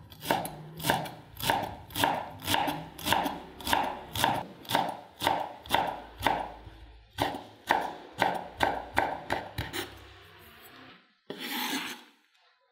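Chef's knife chopping fresh coriander on a bamboo cutting board in steady strokes, about two a second. After a short pause the strokes come faster. Near the end there is a brief scrape as the blade gathers the chopped leaves.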